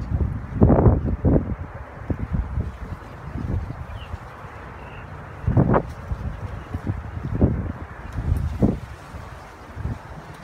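Wind gusting on the microphone in uneven bursts, with sunflower leaves rustling. The loudest gusts come about a second in and again about six seconds in.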